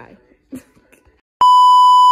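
Television colour-bars test-tone beep: one loud, perfectly steady tone that starts suddenly near the end.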